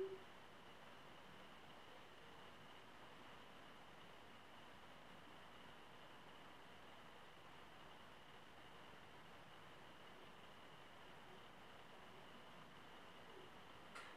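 Near silence: room tone with a faint steady high-pitched hum.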